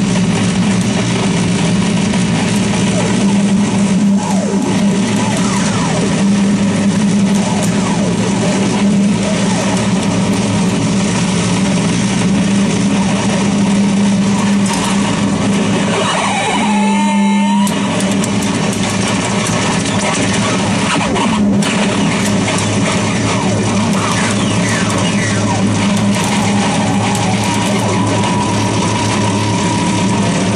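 Harsh noise from a contact-miked metal plate fed through fuzz and distortion pedals, a digital delay and a Sherman Filterbank 2: a loud, dense wall of distorted noise over a steady low drone, with sliding filtered tones. About halfway through it briefly thins to a gliding tone, then the full noise returns.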